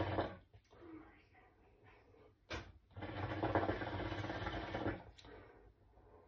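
Shisha water bubbling in a steady run as smoke is drawn through the hose: one pull ends just after the start, a short sound comes about two and a half seconds in, and a second pull bubbles for about two seconds before stopping. The pipe is drawing freely, which the smoker calls drawing very well.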